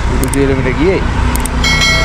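Road traffic: an auto-rickshaw's small engine running as it comes along the road, with a man's voice over it. Near the end a brief, steady high-pitched tone sounds.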